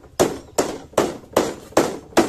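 Hand tool striking in a steady rhythm: five sharp blows about 0.4 seconds apart, close by.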